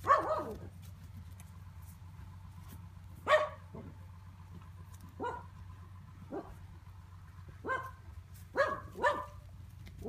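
A dog barking off and on: about eight short, sharp barks at uneven gaps, loudest at the start and a few seconds in, with a quick pair near the end.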